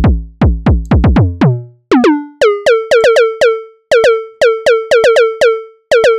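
Hammerhead Rhythm Station drum machine on iPad playing a soloed, sequenced synth rim-shot pattern while the sound is being reprogrammed in its drum-synth editor. The first hits are deep, with a quickly falling pitch. About two seconds in, the pitch jumps up and the hits turn into short, higher ringing tones with a bright, buzzy edge.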